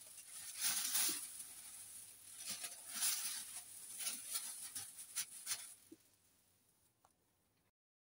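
A large sheet of tissue paper rustling and crinkling in irregular bursts as it is handled and set down, stopping about six seconds in.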